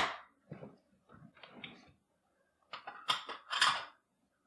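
Faint clicks and crackles of duck eggshell being pulled apart as the yolk is separated. A few louder, sharper clicks and rustles come about three seconds in.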